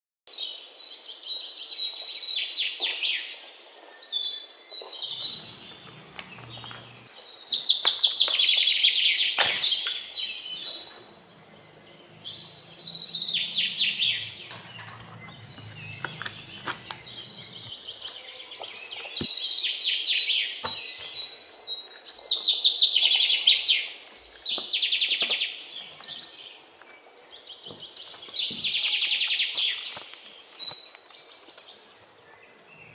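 Bird song: loud, rapidly trilled phrases about two seconds long, repeated roughly every five seconds, with a few short clicks in between.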